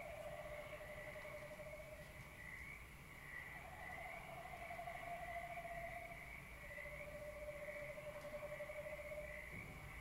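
Quiet, slow celestial new-age electronic music: long held, wavering tones. A high tone runs steadily, while a lower tone fades out and returns at a slightly different pitch every few seconds.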